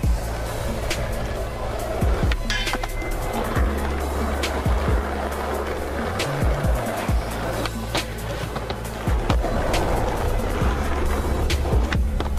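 Skateboard wheels rolling on concrete, with repeated sharp clacks of the board and trucks popping and landing, over background music.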